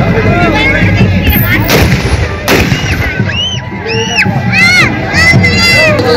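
Celebratory gunfire: two shots from guns fired into the air, less than a second apart, over wedding music and crowd noise. A series of high rising-and-falling whistles follows.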